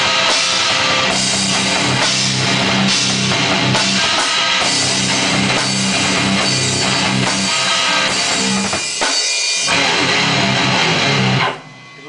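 Electric guitar through a small amplifier and a drum kit playing a rock riff together. There is a brief break about nine seconds in, and the playing stops suddenly just before the end.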